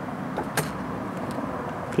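A small vehicle's motor running steadily, with a sharp click about half a second in.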